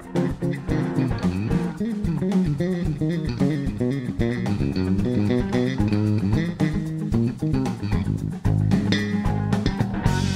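Live band playing: electric guitar and electric bass over a drum kit, with a steadily moving bass line.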